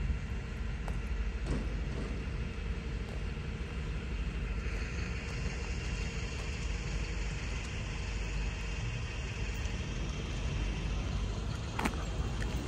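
Steady outdoor street ambience: a low, even rumble with road traffic in the background and a few faint clicks.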